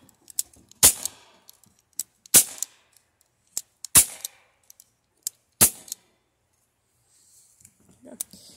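Crosman PFM16 CO2 BB pistol fired four times, about a second and a half apart, each shot a short sharp report.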